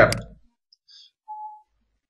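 A man's voice finishes a word. Then comes a quiet pause, broken only by faint high blips and a short faint steady whistle-like tone about a second and a half in.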